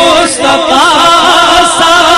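A naat being sung: a voice holding long, wavering melodic notes that slide up and down in pitch.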